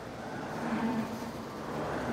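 Street traffic noise: a motor vehicle's engine hum that swells slightly and then holds steady.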